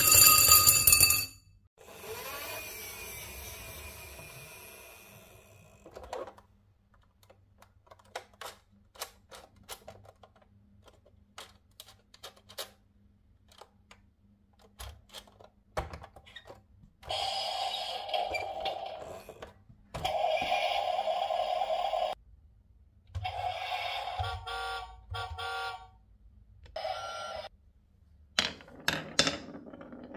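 Glass marbles running through a wooden marble run: ringing tones that cut off about a second in, a stretch of scattered clicks and clacks, then several runs of steady rolling sound of a second or more each.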